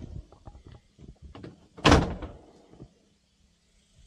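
Double doors of a plastic resin storage shed being opened: a few light clicks and rattles, then one loud thud about two seconds in as a door swings open.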